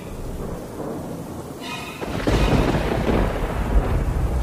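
Thunderstorm sound effect: a steady hiss of rain, with a deep rumble of thunder swelling from about halfway through. A short pitched tone sounds just before the thunder.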